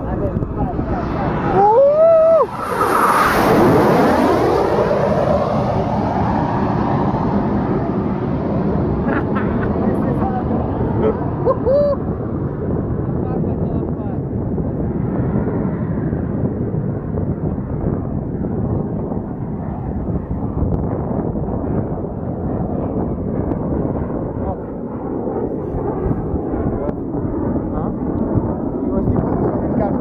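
Aermacchi MB-339 jets of an aerobatic formation passing low overhead: a sudden loud jet roar about two seconds in, its pitch sweeping downward as they go by, then a steady rumble of jet noise for the rest of the time.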